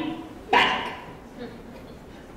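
A stage actor's voice: one short, loud call about half a second in that fades away quickly, then a quiet hall.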